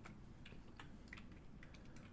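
Faint, scattered clicks of a computer keyboard and mouse, a few light taps over near-silent room tone.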